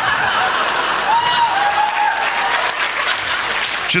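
Audience applauding steadily after a joke.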